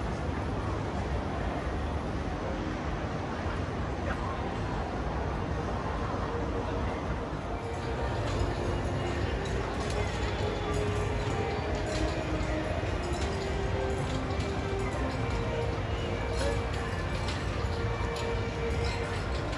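Open-air ambience high above a park: a steady rumble of wind on the microphone. From about eight seconds in, faint music and distant voices come through with it.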